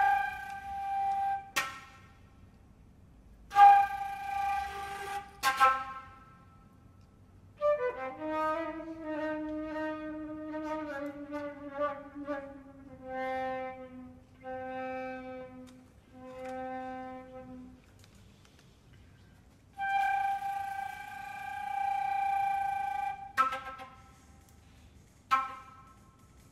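Concert flute playing contemporary music: breathy long tones thick with air noise, broken by pauses and sharp percussive clicks. In the middle a line slides downward and settles into a few repeated low notes.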